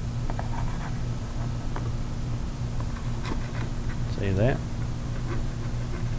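Palette knife drawn lightly across wet oil paint on a canvas, cutting in a water line: a scatter of faint scrapes and ticks over a steady low hum.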